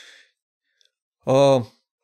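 A man's breath fading out, a pause of about a second, then one short voiced hesitation sound from the same man's voice.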